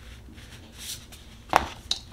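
An oracle card laid down on a tabletop: a faint rustle of card stock, then a sharp tap as the card lands about one and a half seconds in.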